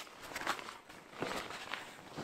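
Poncho fabric rustling as it is gathered and handled, with a few short crinkles.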